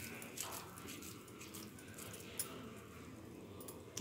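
Faint sounds of hands squeezing and rolling a moist coconut and jaggery mixture into a ball over a steel plate, with a soft tap about two and a half seconds in.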